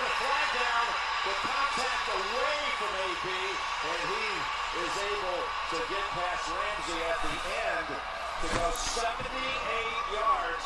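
NFL game broadcast playing quietly: commentators calling the play over steady stadium crowd noise, with a couple of knocks near the end.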